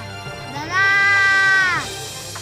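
A child's long, high-pitched wailing cry of distress, starting about half a second in, held, then falling away near the end.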